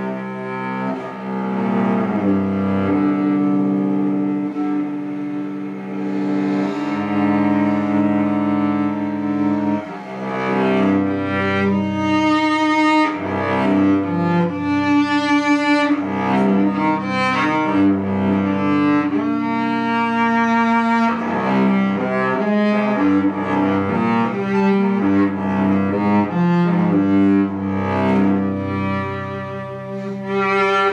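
Cello played with the bow: long low notes sounding under a melody line, the playing turning busier and brighter about ten seconds in.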